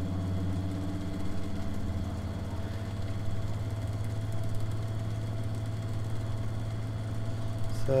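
Bedini pulse motor with a six-magnet ferrite rotor, running under a 6-inch fan load: a steady low hum with fast, even pulsing. A fainter, higher tone fades out in the first couple of seconds as the tuning is backed off.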